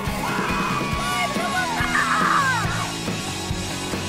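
Upbeat rock backing music with a steady beat, with young girls' excited screams and yells over it. The yells are loudest about half a second in and again about two seconds in.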